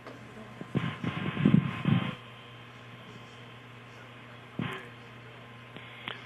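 Steady hiss and low hum of a launch-commentary radio feed between announcements. About a second in comes a muffled burst of faint radio voice chatter, lasting about a second, and a short burst of noise follows a few seconds later.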